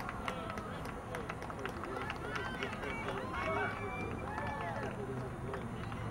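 Players calling and shouting to each other across an outdoor soccer field, many short rising-and-falling calls, with scattered sharp taps over a steady background hum.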